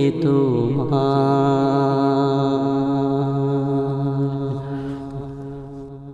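A voice singing the closing phrase of a Bangla Islamic gojol: a short downward glide, then one long held note that fades out near the end.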